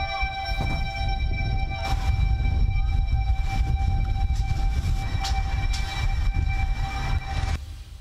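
Soundtrack of a short video: a sustained droning chord of several steady tones over a deep rumble. Some tones drop out a couple of seconds in, and the whole thing cuts off shortly before the end.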